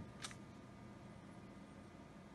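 Near silence: a faint steady hiss, broken by a short click about a quarter second in.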